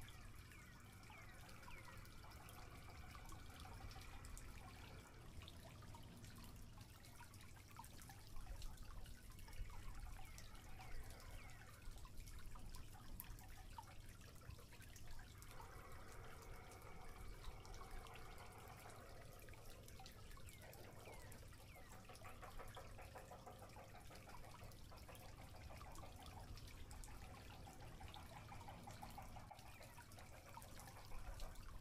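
Near silence: faint outdoor background with scattered small clicks and ticks, a little louder for a few seconds about a third of the way in.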